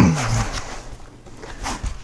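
Foam packing insert being pulled up out of a cardboard shipping box, rustling and scraping against the cardboard. A short vocal sound with falling pitch opens it.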